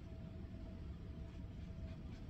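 Steady low room rumble with a faint constant hum, and soft scratching of a paintbrush on canvas near the end.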